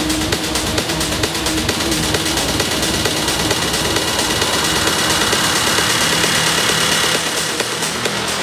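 Hard techno in a continuous DJ mix. A steady kick drum beats for the first two to three seconds, then drops out into a noisy, droning breakdown that swells with hiss.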